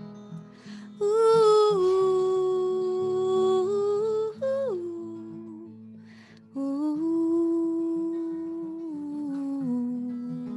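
A woman singing long wordless held notes, close to humming, over a strummed acoustic guitar. There are two phrases, one starting about a second in and one past the middle, and each steps down in pitch.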